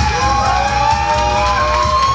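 Loud background music with long held notes that slide upward in pitch and then hold.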